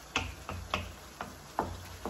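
Wooden spoon knocking against a wok while stirring strips of red pepper in tomato: about five short, light knocks at uneven intervals.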